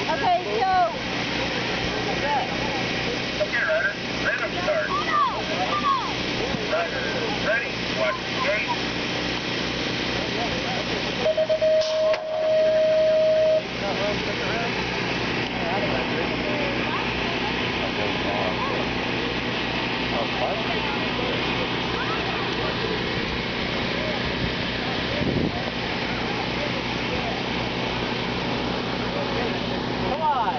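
Voices chattering over steady outdoor noise. Then, about eleven seconds in, a knock and a single steady electronic tone lasting about two seconds, the loudest sound here, typical of a BMX starting gate's signal as the gate drops. After the tone, a steady hiss of outdoor noise with faint scattered voices.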